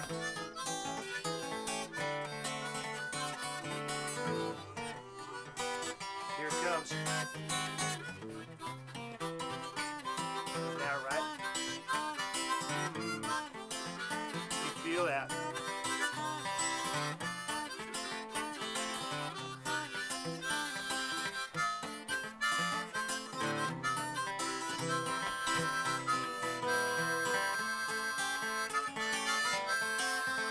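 Harmonica and acoustic guitar playing together, with a few notes sliding in pitch.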